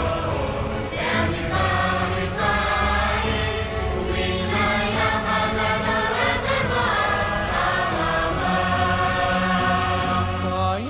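A boys' choir singing a song with long held notes, over an instrumental backing with a steady low bass.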